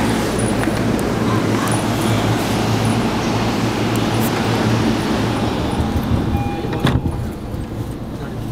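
Busy commuter rail platform noise: a steady low rumble from the electric trains under a loud, even wash of station noise, with a brief tone and a single sharp knock about seven seconds in.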